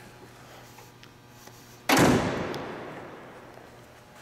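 The hood of a 1958 Edsel Citation being slammed shut: one sharp slam about two seconds in, ringing out over about a second and a half.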